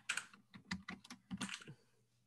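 Typing on a computer keyboard: a quick run of roughly eight keystrokes over about a second and a half, then stopping.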